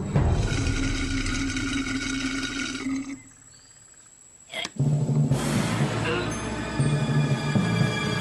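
Cartoon soundtrack music with sound effects. It drops out for about a second and a half around three seconds in, then comes back after a sharp click.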